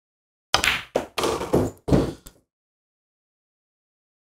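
A pool stun shot on an easy 8-ball: the cue tip strikes the cue ball, the cue ball clacks into the 8-ball, and further knocks follow as the balls hit the cushion and the pocket. It makes a quick string of about six clacks and knocks over two seconds, starting about half a second in.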